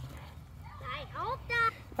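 A child's voice, faint and high-pitched, saying a few brief sounds about a second in, over low background noise.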